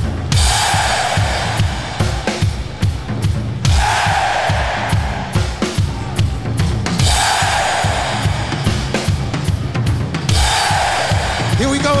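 A stadium crowd shouting 'hey!' on cue four times, each shout about a second long and roughly three seconds apart. Underneath runs a steady rock drum beat of bass drum, snare and cymbals.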